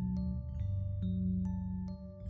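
Background music: a slow melody of struck, ringing notes, about one every half second, over low held bass notes.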